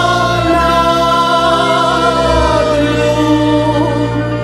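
Slovak folk song played by a cimbalom band with singing, holding long notes with vibrato over a steady bass line.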